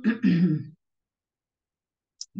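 A person briefly clearing their throat, a short two-part voiced 'ahem' with a falling pitch lasting under a second, then silence.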